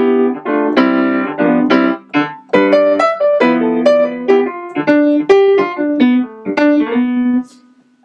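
Piano playing a short demonstration of the Mixolydian mode over a G7 dominant seventh chord: a run of struck chords and single notes that stops shortly before the end.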